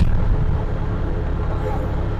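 TVS King bajaj (auto-rickshaw) engine running steadily as the vehicle drives, heard from inside the open cabin.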